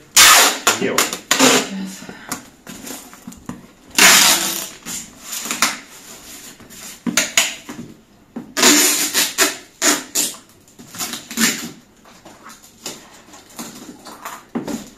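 Packing tape pulled off its roll in several noisy pulls of a second or so each and pressed onto a cardboard box.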